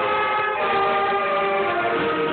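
School concert band of flutes, trumpets and other wind instruments playing sustained chords, the held notes changing to new pitches about every second.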